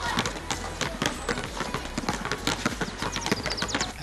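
Several basketballs being dribbled on a hard outdoor court: many overlapping bounces, several a second, in no fixed rhythm.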